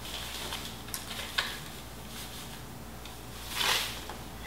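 Granulated sugar poured from a paper bag into a bowl on a kitchen scale: a short hiss of pouring grains near the end, after a couple of faint clicks.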